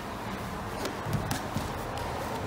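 Grapplers moving on training mats: low shuffling with a few scattered soft knocks as bodies and bare feet shift on the mat.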